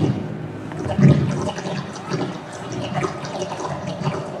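Rushing, flowing water sound effect from the projection-mapping show's outdoor loudspeakers, with a low rumble under it and a loud swell about a second in.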